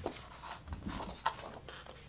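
Faint handling sounds from a sketchbook being lifted and opened: a few soft clicks and paper rustles.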